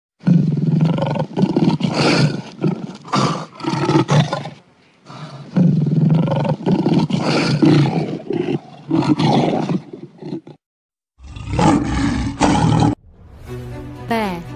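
Lion roaring in a run of loud, rough calls: two long bouts split by a brief pause about five seconds in, then a shorter bout near the end.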